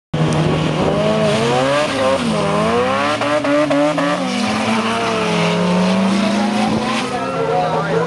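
Drag-race run between a Ford Cortina and an Integra: engines revving at the line, then accelerating hard away. The engine note climbs and drops back at gear changes, about two seconds in and again near four seconds, then holds steadier as the cars pull away.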